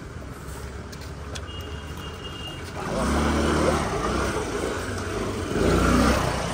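A motor vehicle's engine running as it passes, getting louder about three seconds in and swelling again near the end.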